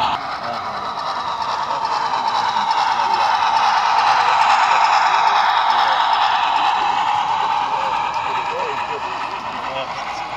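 Model freight train rolling past on the layout's track: a steady whirring rattle of small wheels on rails that swells and then fades as the cars pass. Crowd chatter in a large hall runs behind it.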